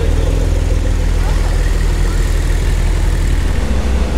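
Porsche 992 flat-six engine running at low revs with a steady low note as the car rolls slowly past.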